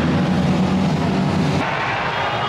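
Supercross motorcycle engines running on the track, a loud steady drone that drops away about one and a half seconds in.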